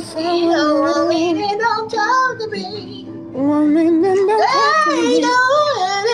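A woman singing a slow R&B melody solo, holding long notes with vibrato and breaking into a quick run about four and a half seconds in.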